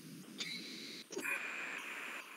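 Faint breath-like hiss over a video-call microphone, with two soft clicks about half a second and a second in.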